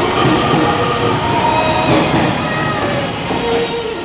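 Nishitetsu 'Suito' electric train running past close along a station platform: a steady rush of wheel and running noise, with faint tones rising and fading over it.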